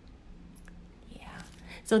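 A quiet pause in a woman's speech: faint room tone and a soft breath just before she speaks again near the end.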